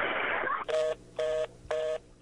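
A brief harsh burst of noise on the narrow-band 911 phone recording, then a telephone fast-busy tone beeping twice a second: the sign that the call has been cut off.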